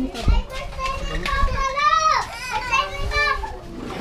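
Children's voices chattering and calling out, with one high call that swoops down in pitch about halfway through. A low thump sounds just after the start.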